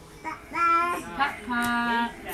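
A high voice singing held notes: a short note early on, then a long, steady note in the last half second.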